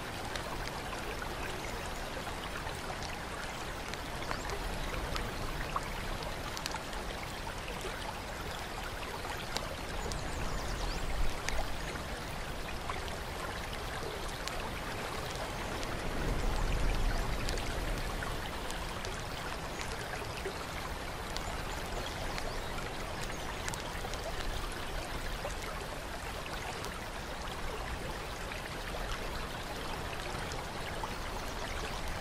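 Running water trickling and splashing steadily, with many small drips. A low rumble swells twice, about ten seconds in and again around seventeen seconds.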